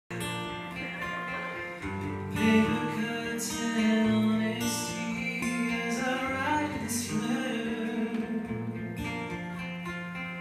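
Live band playing a song's intro, led by guitar, with long held chords that change every second or two.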